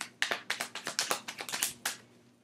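A deck of oracle cards being shuffled by hand: a quick run of crisp card slaps, about eight a second, stopping near the end.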